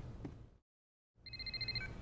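Telephone ringing with a rapid electronic trill: about eight quick high beeps in half a second, then two lower notes, cut short as the call is answered. Before it the sound drops out to dead silence for about half a second.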